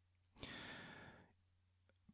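A man's single breath into a close handheld microphone about half a second in, lasting under a second, over a faint steady low hum.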